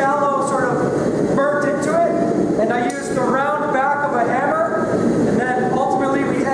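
A person's voice, untranscribed, over a steady low roar.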